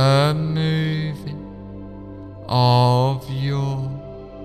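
Slow meditative background music: a steady drone under long, wavering chant-like notes that swell twice, at the start and again about two and a half seconds in.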